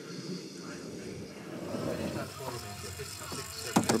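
Two-man bobsleigh's runners sliding on the ice of the outrun as the sled slows to a stop, a steady low noise. Faint voices are heard in the background during the second half.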